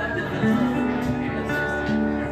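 A metal-bodied resonator guitar and an acoustic guitar playing together, an instrumental passage of picked notes over sustained low notes.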